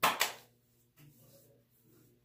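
Two quick slaps of wet hands patting splash aftershave onto the face and neck, close together right at the start, then only faint rustling.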